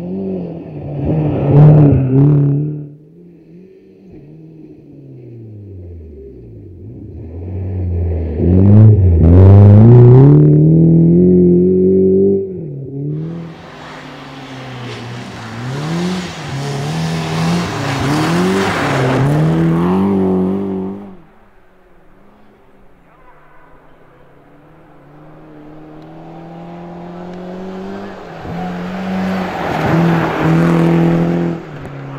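Rally car engine at high revs on a snow stage, its pitch climbing and dropping again and again with gear changes as the car drives past, with a hiss of tyres on snow during the loudest pass. It falls quiet for a few seconds, then the engine builds again as the car approaches near the end.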